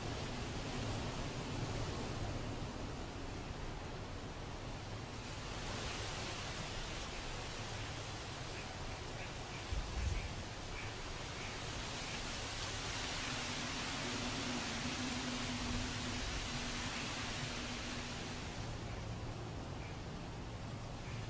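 Steady rushing noise with a faint low hum, growing brighter in the middle of the stretch, and one dull thump about halfway through.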